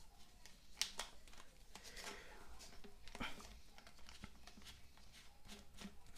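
Faint clicks and scrapes of a plastic washbasin trap being handled as its plastic nut is screwed onto the outlet pipe, pressing the cone-shaped seal into place; a couple of sharper clicks stand out, about a second in and about three seconds in.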